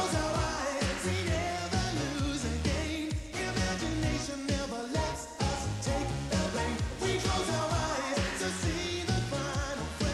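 A 1980s pop-rock song with a sung vocal over a band with a steady beat.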